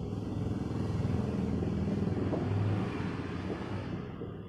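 Engine rumble of a passing motor vehicle, swelling over the first second and fading away near the end, over a steady low background rumble.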